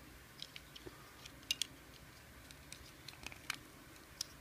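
Small hard-plastic toy armor parts clicking and tapping as they are pressed onto a Robo Knight action figure's legs: scattered light clicks, with a sharper double click about one and a half seconds in and another click a little past three and a half seconds.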